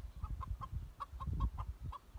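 A chicken clucking in a quick, even run of short clucks, about five a second, over a low rumble.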